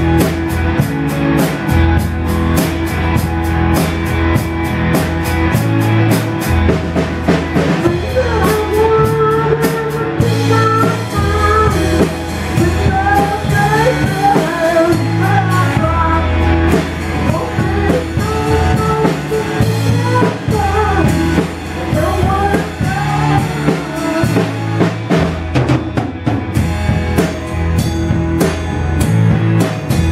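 Amateur three-piece rock band playing live: electric guitar and bass over a steady drum-kit beat. A wavering melody line rises over the band for a stretch in the middle.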